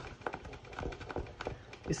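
A pointed tool scratching the scratch-off coating off a cardstock savings-challenge card in quick, irregular little scraping strokes.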